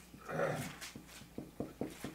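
Marker pen writing on a whiteboard in a run of short squeaks and ticks. A brief voice-like sound about half a second in is louder than the writing.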